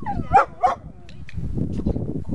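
A dog barking twice in quick succession, two short sharp barks about a third of a second apart.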